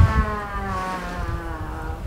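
A long, drawn-out "wooow" of amazement from a person's voice, one sustained vowel that rises slightly and then falls away near the end, over a steady low rumble.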